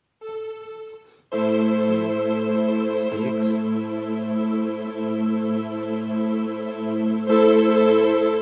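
Electronic keyboard playing sustained chords on a string voice: a short chord at the start, then a long held six chord from about a second in, moving to a new chord near the end.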